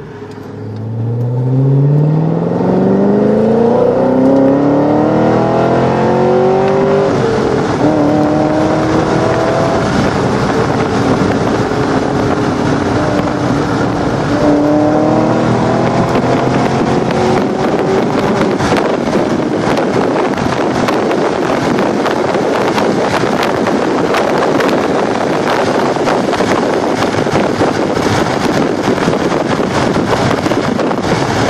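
Chevrolet Corvette C6's V8 heard from inside the cabin under hard acceleration. The engine note climbs steeply for about six seconds, drops sharply at a gear change about seven seconds in, then pulls again through a second shift around fourteen seconds. From then on the engine is buried under loud rushing wind and road noise with a rapid flutter at high speed.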